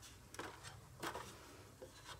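A few faint, irregular knocks and clicks from a fiberglass stepladder with aluminum steps as a person steps up onto it.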